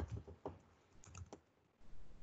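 Faint keystrokes on a computer keyboard: a quick run of about eight key presses as a word is typed, stopping a little past halfway.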